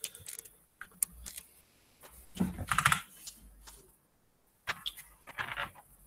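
Typing on a computer keyboard: short irregular bursts of key clicks with brief pauses between them.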